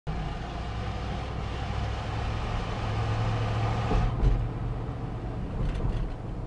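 Road and engine noise heard from inside a vehicle's cab while driving through a concrete tunnel: a steady low hum under a hiss of tyres. There is a low bump about four seconds in, after which the hiss eases.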